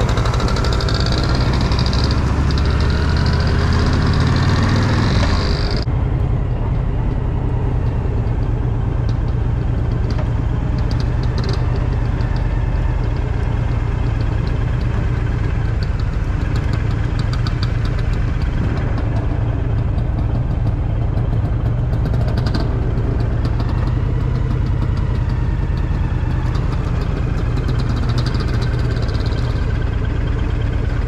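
Motorcycle engine running steadily at low revs as the bike is ridden slowly, with wind rushing over the microphone for about the first six seconds, stopping suddenly.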